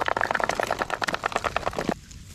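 Sea snail shells clicking and clattering against one another as hands rummage through a heap of them in a styrofoam box: a rapid, irregular run of hard clicks that cuts off suddenly at the end.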